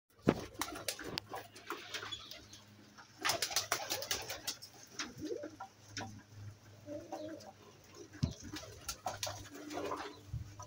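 Domestic pigeons cooing: a few low coos about halfway through and near the end, among many scattered sharp clicks and taps.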